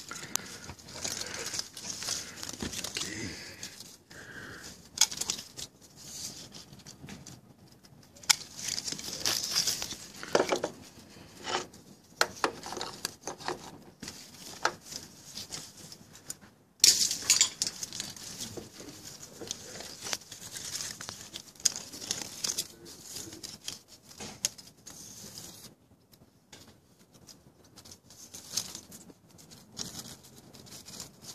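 Hand pruning shears clipping thorny twigs inside a citrus tree, with leaves and branches rustling against each other. The clicks and rustles come irregularly, and the loudest, a sudden crackle of leaves and twigs, comes about seventeen seconds in.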